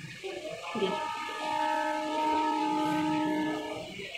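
A horn sounds one long steady blast, several pitches together, starting about a second in and lasting nearly three seconds.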